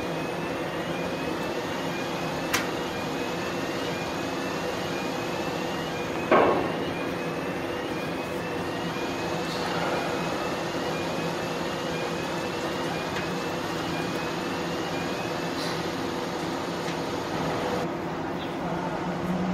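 Steady machinery hum of a large car ferry, heard from its open upper deck, holding several steady tones, with a faint short rising chirp repeating a little more than once a second. A sharp click comes about two and a half seconds in, and a louder knock with a brief ring about six seconds in.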